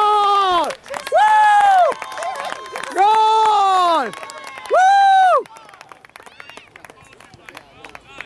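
A spectator cheering a goal in a soccer match: four long, high-pitched shouts of about a second each, in quick succession, followed near the end by quieter background crowd noise.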